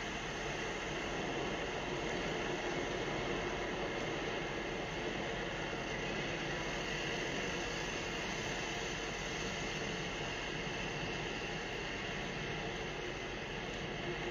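Steady city street traffic noise, an even rush with no distinct events.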